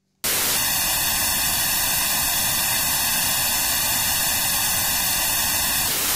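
Loud, steady hiss of television static: white noise that switches on abruptly just after the start and holds even throughout.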